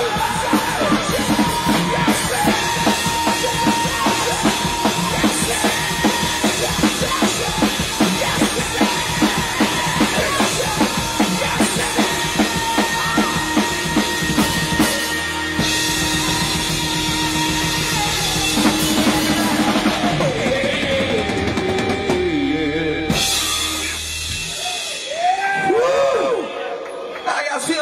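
Live rock band with distorted electric guitars, bass and drum kit playing the end of a song: a fast, steady drum beat under guitars and shouted vocals, then the band holds one long ringing final chord that stops near the end, followed by a brief vocal yell.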